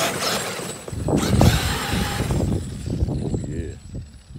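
Electric RC monster truck driving over a snowy lawn, its tires churning through the snow; the sound swells about a second in and fades as the truck moves away.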